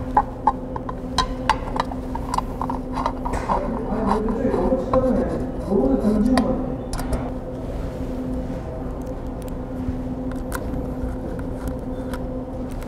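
A robot arm's side cover being handled and fitted into place: a run of light clicks and knocks in the first couple of seconds, then a few scattered taps. All of it sits over a steady hum.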